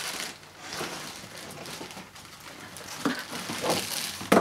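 Plastic packaging bag crinkling and rustling, with cardboard scraping, as a plastic-wrapped vacuum cleaner body and hose are pulled out of a cardboard box. There are a few sharper rustles near the end.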